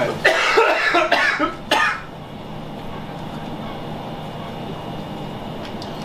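A man coughing hard in a quick run of harsh bursts for about two seconds, his throat caught by the burn of a 750,000-Scoville chili sauce. After that only a steady low room hum remains.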